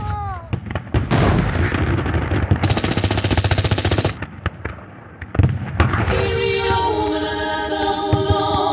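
Gunfire: scattered single shots, then a fast burst of automatic fire lasting about a second and a half in the middle, and two more single shots after it. Near the end, voices take over, wailing in long held notes.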